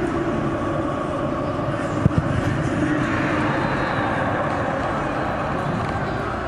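Pitch-side sound in a football stadium with empty stands: a steady noise bed with faint voices, and a sharp thump about two seconds in, followed closely by a second, smaller one, fitting a football being struck from the penalty spot.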